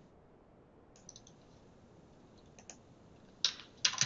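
Computer keyboard keystrokes, a few light taps about a second in and again a little past halfway, then two much louder clicks near the end.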